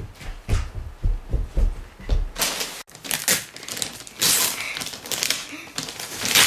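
A few low thumps, then Christmas wrapping paper on a gift box crinkling and tearing in repeated bursts as a child's hands rip at it.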